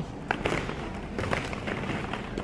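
Hollow plastic ball-pit balls knocking and rustling against one another as someone moves in the pit, with a handful of light, sharp clicks.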